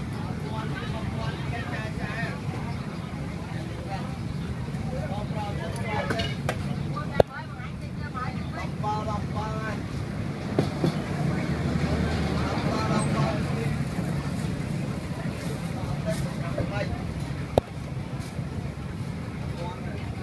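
Background voices of people talking over a steady low rumble of street traffic, with two sharp clicks, one about seven seconds in and one near the end.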